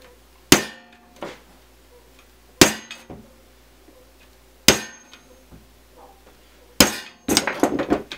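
A hammer striking a steel scratch awl held on thin sheet metal (roof flashing), four sharp strikes about two seconds apart, each with a brief metallic ring. The strikes are dimpling marks for drill holes so the drill bit will travel straight. A short clatter follows near the end.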